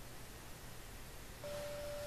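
Faint room tone, then about one and a half seconds in a steady single-pitch electronic beep begins and holds.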